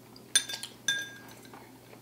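Metal spoon clinking twice against a ceramic bowl, each clink ringing briefly.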